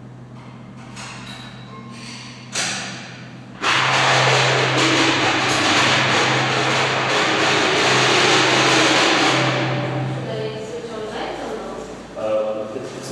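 A sudden knock about two and a half seconds in, then a loud, steady rushing hiss over a low hum for about seven seconds, which fades away; faint voices near the end.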